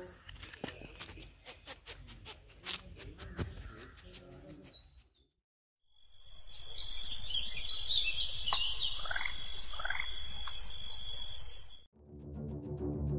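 A run of sharp clicks for the first five seconds, a second of silence, then a steady high hiss with bird calls over it, including two short rising calls near the end.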